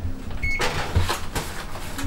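Aluminium foil tray of food slid onto a wire oven rack: a run of light metallic clatters and scrapes. A short electronic beep sounds about half a second in.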